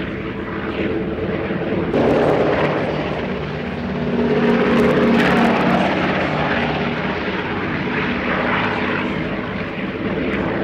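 A de Havilland Canada DHC-4 Caribou's two Pratt & Whitney R-2000 radial piston engines and propellers running steadily as it flies past low, loudest about five seconds in.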